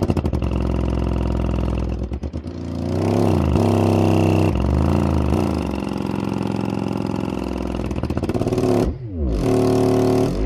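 Bare prototype Sundown Audio LCS subwoofer (poly cone, rubber surround, double-stacked motor) playing a loud, buzzy low tone in free air that glides up and down in pitch several times, with a rapid rattle near the start and again near the end. The driver is being pushed to its maximum mechanical excursion.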